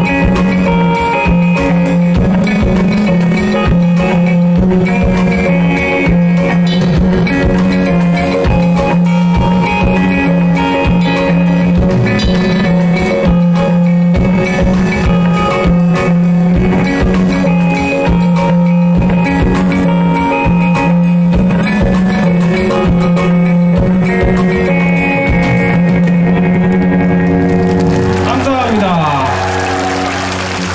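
Live band playing an instrumental passage: electric guitar over drum kit and keyboard, with a steady low bass line, loud and continuous.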